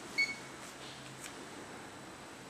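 A single short electronic beep about a quarter second in, over a faint steady hum: the key beep of a TR892 car GPS/DVD head unit as it is switched on and starts to boot.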